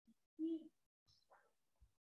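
Mostly near silence, broken about half a second in by one short, low, steady hum, like a brief voiced 'mm' or 'euh' hesitation, with a fainter trace of breath or voice about a second in.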